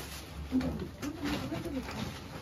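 A bird giving a low, wavering cooing call, starting about half a second in and fading near the end.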